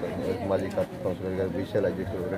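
A man speaking Telugu in short phrases, his voice low and continuous.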